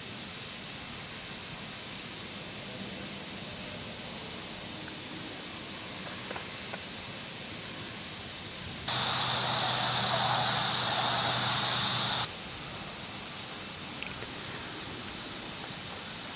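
Steady hiss of outdoor ambience. About nine seconds in, a much louder rushing noise with a low hum starts, lasts about three seconds and stops abruptly.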